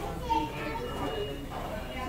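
Background chatter of other people in a restaurant, several voices talking at once, with one short louder voice about a third of a second in.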